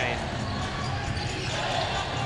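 Basketball being dribbled on a hardwood court, over a steady wash of arena background noise.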